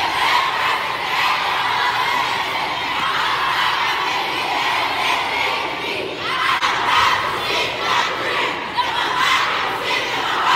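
Large crowd of students in bleachers shouting and cheering together, swelling louder about six and a half seconds in.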